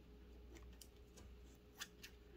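Faint snips of scissors cutting spawn netting: a few quiet clicks, the sharpest near the end.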